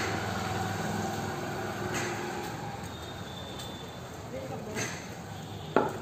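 Faint voices over a steady low background hum, with a few light knocks and a sharper knock near the end.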